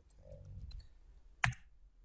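Computer keyboard keys being typed: a few light clicks, then one sharp, louder key strike about one and a half seconds in as the command is entered.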